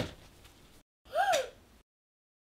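A young girl's short, high surprised "ooh", like a gasp, about a second in; its pitch rises and then falls.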